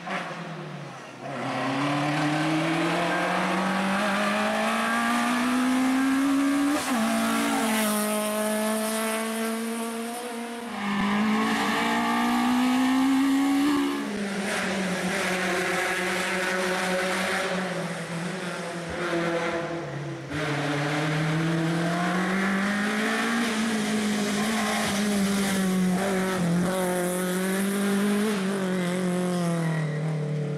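Citroën C2 R2 rally car's four-cylinder engine at full throttle. Its pitch climbs steadily and drops sharply at each upshift, about a quarter and half of the way in. Later the pitch falls and rises again as the car brakes and accelerates through corners.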